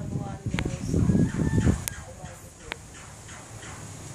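Chicken clucking mixed with people's voices in the first two seconds, then a few quieter clucks over a low background.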